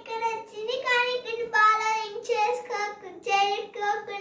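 A young girl's voice, high-pitched and sing-song, in phrases broken by short pauses.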